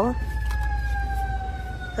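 A thin, steady whining tone that slowly falls in pitch and stops near the end, over a low steady rumble.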